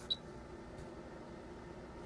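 A short high beep from an Agilent E3631A bench power supply as it powers up, then a faint steady low hum.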